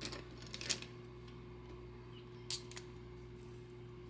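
Faint handling sounds on a desk as a felt-tip marker is picked up and its cap pulled off: a few soft clicks and taps, the sharpest about two and a half seconds in, over a steady low hum.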